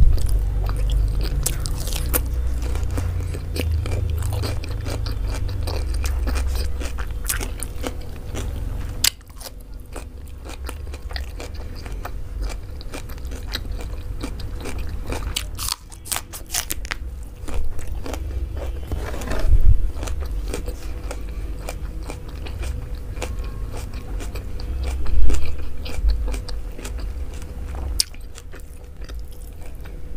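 Close-miked eating sounds: chewing and biting mouthfuls of mansaf rice with yogurt-sauced lamb, with crisp crunches of fresh cucumber and the wet squish of fingers pressing rice into balls. There are dense small clicks throughout and a few louder chews about two-thirds of the way in.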